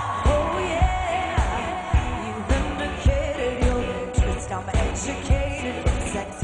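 Electronic dance-pop music: a steady kick drum about twice a second under a sung melody.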